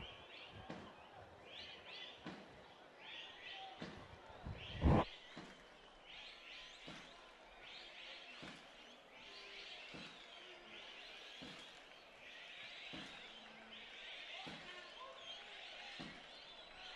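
Football stadium crowd noise, a steady murmur of voices and shouts, broken by scattered sharp thuds of the ball being kicked. The loudest thud comes about five seconds in.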